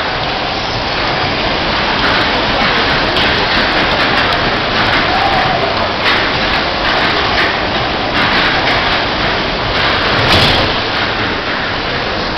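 Loud, steady din of dodgem cars running on the rink floor: a rain-like hiss with crackling throughout and a louder crackling burst about ten seconds in.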